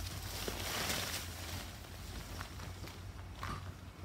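Leaves of a coffee plant rustling as they are let go, then footsteps on a gravel path, over a steady low hum. The rustling is loudest in the first two seconds.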